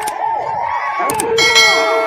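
An on-screen subscribe-button sound effect: a couple of sharp mouse clicks about a second in, then a ringing bell chime that holds to the end. It plays over a loud, dense background of many voices.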